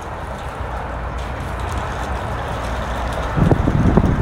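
A steady low rumble, then from about three and a half seconds in a louder rattling rumble of the small plastic wheels of a child's toy shopping cart rolling over a concrete sidewalk.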